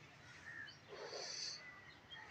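Quiet outdoor ambience with faint distant bird calls, a few short chirps.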